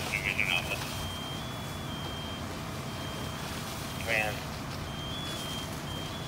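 High electronic warning beeps, tones of about half a second that step slightly up and down in pitch, sounding on and off from about a second in, over a steady low rumble. Brief voices break in at the start and again about four seconds in.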